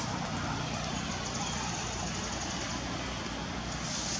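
Steady low hum of a running vehicle engine under an even outdoor background hiss.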